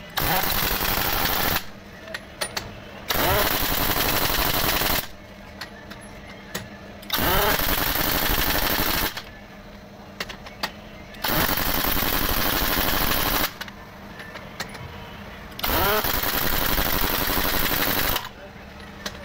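Heavy-duty pneumatic impact wrench hammering on a truck wheel's lug nuts in five bursts of about two seconds each, one nut after another, with short pauses between.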